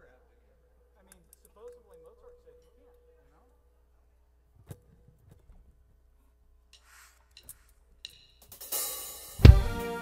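Jazz quartet coming in on a tune after a quiet pause. First a few soft clicks and faint talk, then about eight and a half seconds in a cymbal wash and the full band enter, with a loud drum and bass hit just before the end.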